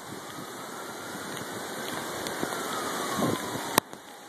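Hurricane wind and rain on a phone microphone: a steady rushing noise that builds gradually, with a faint whistle falling slowly in pitch through it. A single sharp click near the end.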